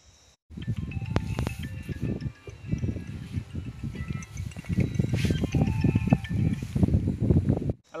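Loud music mixed with voices, starting abruptly about half a second in and cutting off suddenly just before the end.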